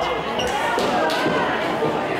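Crowd voices and shouts echoing in a gymnasium, cut by about four sharp smacks in the first second or so as wrestlers strike and grapple in the ring.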